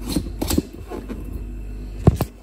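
A metal screw-on lid being twisted onto a glass jar of lemon curd, with a few sharp clicks and scrapes of metal on glass in the first half second, then quieter handling rustle.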